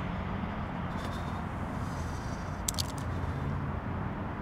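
A car engine idling steadily, a low, even rumble, with a couple of quick clicks about two-thirds of the way through.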